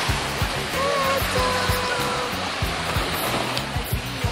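Ocean surf washing on the shore, a steady rushing noise, with wind buffeting the microphone in low rumbles.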